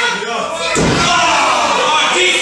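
A single heavy thud on a wrestling ring's mat, about a second in, amid people's voices.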